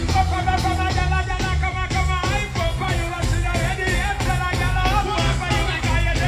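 Live reggae music played loud on a stage sound system, with heavy bass and a steady drum beat.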